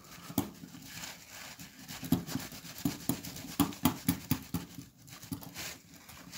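A paper towel rubbing and dabbing against a small painted metal model plow close to the microphone. It makes irregular short scuffing rustles, about three or four a second.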